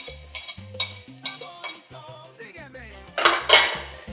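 Metal spoon clinking and scraping against a ceramic plate as chopped green onion is pushed off into a pan: a few sharp clinks in the first two seconds, then a louder scrape near the end. Background music plays underneath.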